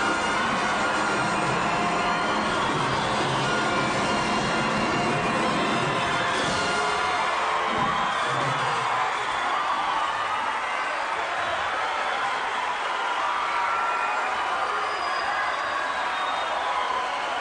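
Large symphony orchestra with drum kit and cymbals playing a lively mambo, with an audience cheering and shouting along.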